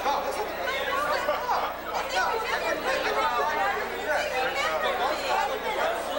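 Many people talking at once: overlapping crowd chatter in which no single voice stands out.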